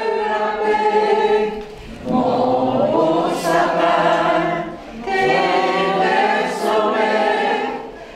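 A choir of voices singing a Christmas carol in long phrases of held notes. It breaks off for a short breath about two seconds in and again about five seconds in.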